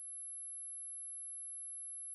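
A single steady high-pitched ringing tone, an ear-ringing (tinnitus) sound effect of the kind used to mark a stunned moment, with a faint click a moment in.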